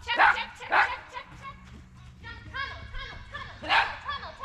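A dog barking during an agility run: three loud, short barks, two in the first second and one near the end, with a person's voice calling in between.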